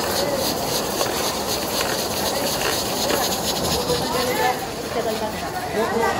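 Commercial kitchen noise: a steady hiss of burners and steam, with a ladle stirring in a pressure-cooker pot and voices in the background.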